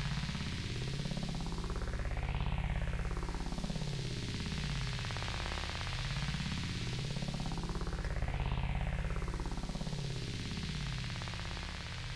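Synthesizer holding a sustained chord, run through a slow sweeping effect that rises and falls twice, about six seconds per sweep.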